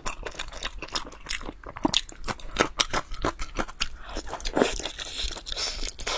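A mouthful of soft, sauce-braised meat being bitten and chewed, giving a dense run of short mouth clicks, several a second.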